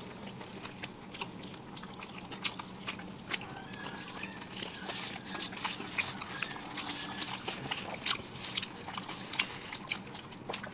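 Close-miked chewing and biting by several people eating at once: a steady stream of small wet clicks and smacks, over a faint steady low hum.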